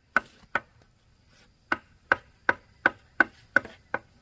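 Sharp knocks of a hand tool striking wooden boards: two knocks, a pause of about a second, then seven evenly spaced knocks, about three a second.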